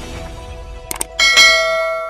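The tail of an intro music sting fades out. About a second in come two quick clicks, then a bright bell chime that rings out and slowly fades: a subscribe-button click and notification-bell sound effect.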